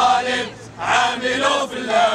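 A group of men chanting protest slogans in unison, short shouted phrases repeating in a steady rhythm.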